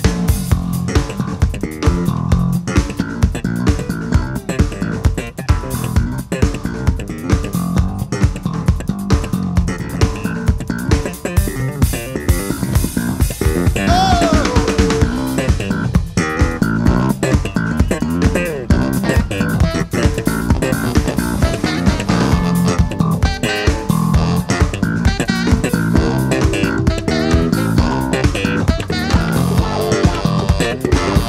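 Live band playing an instrumental blues passage with a steady driving beat: electric bass, electric guitar and drum kit, with a baritone saxophone playing near the end.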